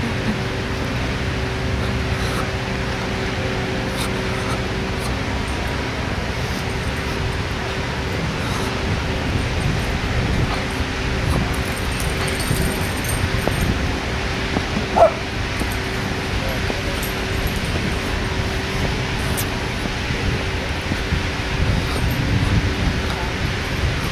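Outdoor background noise: a steady rush with low rumbling, and one short high call about fifteen seconds in.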